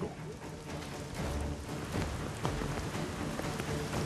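Steady rain falling on forest foliage, an even hiss, with soft background music underneath.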